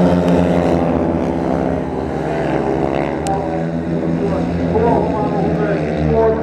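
Several speedway motorcycles, their 500cc single-cylinder methanol engines running hard together as the pack races round the track. It is a loud, steady engine note with a slight rise and fall in pitch.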